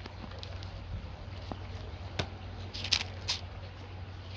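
Paper rustling as the pages of a Bible are turned to a new passage: a few short, soft rustles about two and three seconds in, over a steady low hum.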